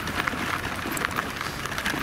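Snow crunching under walking footsteps and pram wheels as a baby pram is pushed along a packed snowy path: an irregular crackle of many small crunches.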